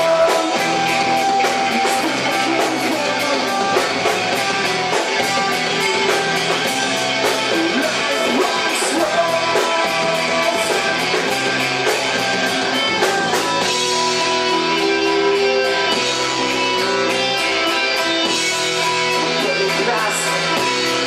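Live emocore band playing a song loud and steady: electric guitars over a drum kit.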